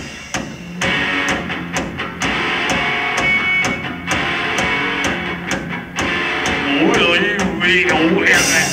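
Garage-punk rock band playing live: electric guitars and drum kit in the instrumental opening of the song, before the singing starts, with a brief drop in loudness about half a second in before the band comes back in full.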